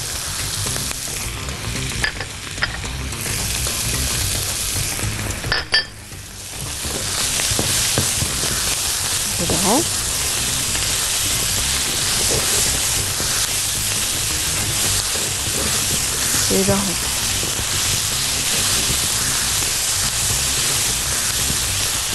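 Chopped tomatoes, peppers, onion and garlic sizzling as they fry in a nonstick pan, stirred with a spatula. The sizzle is steady, dips briefly about six seconds in, then runs a little louder.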